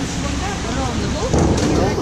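A diver entering the pool water from a diving platform with a splash about one and a half seconds in, in a reverberant indoor pool hall with voices around.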